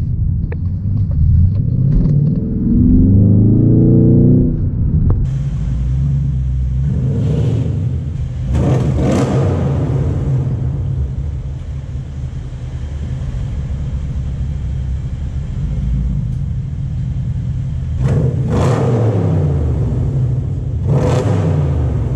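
Mercedes E550 coupe's V8 accelerating, its pitch rising over the first few seconds. After a cut it idles with a steady low rumble in an underground car park and is revved in about four short blips.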